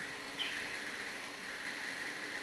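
Steady room noise of a large meeting hall, an even hiss with a faint high hum and no distinct events.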